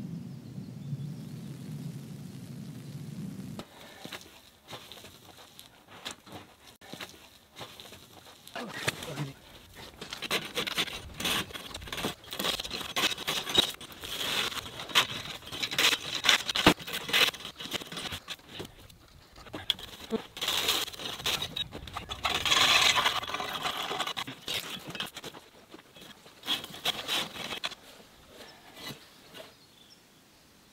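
A low steady hum for the first few seconds, then irregular strokes of a tool scraping and knocking against ice blocks and packed slush, heaviest in the middle and again about two thirds of the way through.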